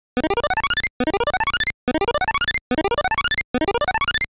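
Synthesized cartoon sound effect: quick rising runs of short plinking notes, each run under a second long, repeated about five times with brief gaps between them.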